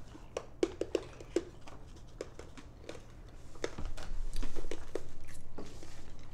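Small clicks and mouth noises of someone sucking and chewing a sour hard candy, with some light paper rustling. The sounds grow louder and busier about halfway through.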